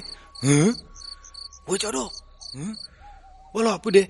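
Cricket-like insect chirping in short, high, repeated pulses, the night-time ambience under a spoken story.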